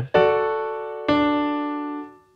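Piano playing two chords, each struck and left to ring and fade: the first just after the start, the next about a second in. They are an A major chord in second inversion followed by a D major chord in first inversion, with an extra chord note added under the right-hand thumb.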